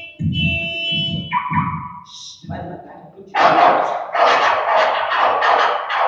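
A man's voice in the first couple of seconds, then from about three seconds in an audience breaks into loud, pulsing laughter that carries on steadily.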